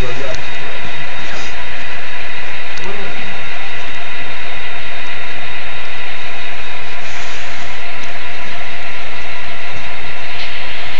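Model trains running on the layout: a steady, loud mechanical running noise with a constant hum, as the locomotives roll around the curve. Faint talk is underneath.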